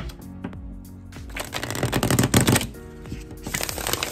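A tarot deck being shuffled by hand: a run of rapid card clicks starting about a second in and lasting over a second, then a shorter burst near the end. Soft background music with held tones plays throughout.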